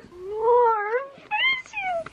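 Bernese mountain dog puppy whining over a phone video call: one long rising-and-falling whine, then a shorter falling one.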